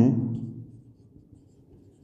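Faint short strokes of a marker pen writing on a whiteboard, right after a man's spoken word dies away at the start.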